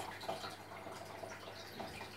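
Faint, steady water noise from a running aquarium, with no distinct events.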